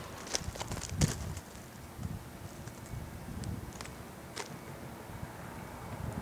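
Quiet outdoor background with a low rumble and a few faint scattered clicks, the most noticeable about a second in.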